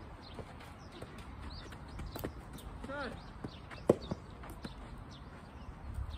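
Soft tennis rally: rackets striking the soft rubber ball, with sharp pops about two seconds in and again near four seconds, the second the loudest, and a few lighter knocks after it.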